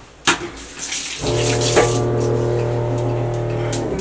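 Kitchen tap turned on with a click and water running into the sink. About a second in, a water pump starts with a steady, even hum under the water, and both stop just before the end.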